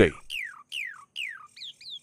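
A songbird singing clear whistled notes: three long notes that each slide down in pitch, then quicker short notes near the end.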